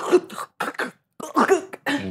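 A woman vocally imitating a dog's sudden squirt of diarrhoea: a few short, harsh, cough-like sputters from the throat with brief gaps between them.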